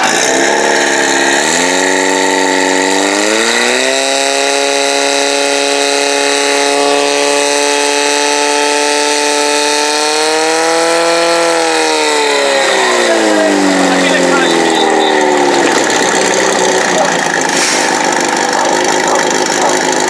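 Portable fire pump's engine revving up over the first few seconds and running high and steady while it drives water through the hose lines to the nozzles, then winding down about twelve seconds in.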